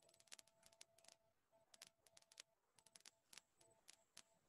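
Near silence on a video-call line, with faint scattered clicks and a faint steady tone.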